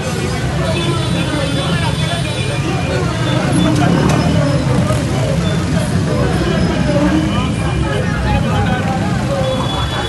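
Many people talking at once over a steady low rumble of street noise.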